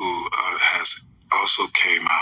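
A person speaking: speech only, in quick bursts with short pauses.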